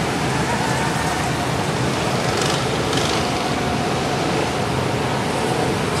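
Steady rushing noise, with faint voices in the background about a second in.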